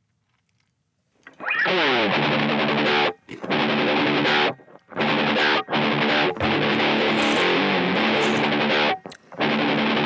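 Electric guitar played through an MI Audio Crunch Box distortion pedal: heavily distorted chords in short phrases with brief stops, starting about a second in.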